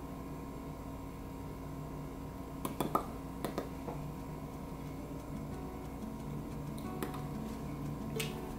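Quiet room with a steady low hum, and a few short soft clicks about three seconds in and again near the end, from lips and a wand applicator as liquid matte lip cream is dabbed on.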